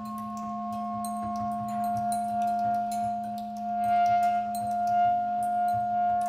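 Live acoustic band of clarinets, double bass and drums playing: several long notes held steady together over light, scattered cymbal and percussion taps, slowly growing louder.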